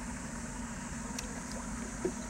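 A steady low hum over a constant high-pitched drone of insects.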